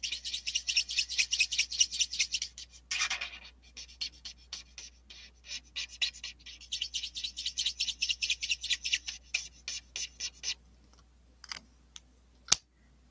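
Marker tip scratching on paper in rapid short back-and-forth colouring strokes, several a second, with one longer stroke about three seconds in; the strokes stop about ten and a half seconds in, with a couple more near the end.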